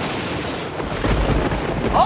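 A loud rumbling, thunder-like sound effect: a rush of noise that deepens into a heavy low rumble about a second in.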